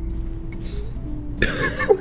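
Quiet background music holding a low note, then a sudden loud burst from a person's voice about one and a half seconds in.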